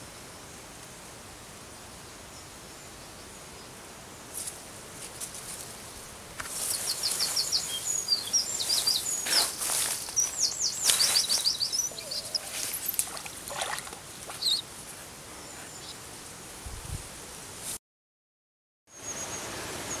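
Songbird singing in quick high trills of repeated chirps from about six seconds in, over a faint steady outdoor background, mixed with knocks and rustles of close handling. The sound drops out completely for about a second near the end.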